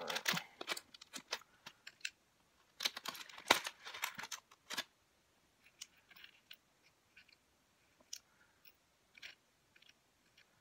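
Clear plastic packet crinkling, with small sharp clicks as little star embellishments are picked out of it and handled. The handling is busiest in the first five seconds, then thins to a few faint scattered clicks.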